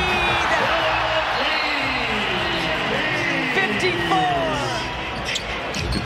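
On-court sound of an NBA game in a full arena: a steady crowd din, with many short squeaks of sneakers on the hardwood and the ball bouncing.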